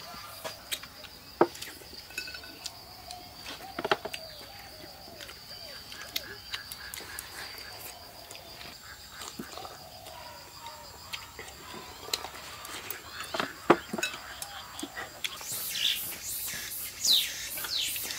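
Eating at a table: chopsticks clicking against porcelain bowls, with chewing and faint low murmurs, a few sharp clicks standing out. A steady high thin tone runs underneath.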